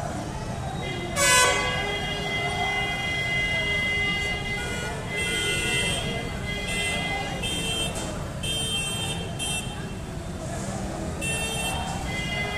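Vehicle horns honking in short and longer blasts through the din of a street crowd, with one loud blast about a second in.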